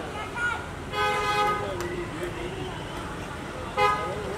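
A horn honks: one beep of just under a second about a second in, and a second, short beep near the end.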